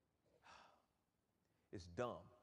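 Near silence in a pause between spoken phrases: a faint breath about half a second in, then a brief burst of voice near the end.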